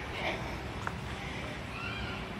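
Low, steady outdoor background noise, with a faint click about a second in and a faint distant rising-and-falling call near the end.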